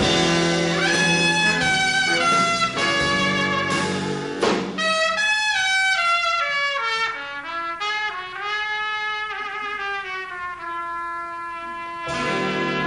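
Swing big band playing a ballad with a full brass section. About five seconds in, the ensemble thins out to a softer brass melody line that falls in pitch and then holds a long note.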